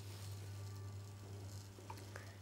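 00 gauge model steam locomotive running along the track with a faint steady hum from its motor and wheels.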